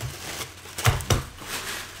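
Tissue paper rustling and crinkling as it is pulled out of a cardboard box, with a couple of soft knocks about a second in.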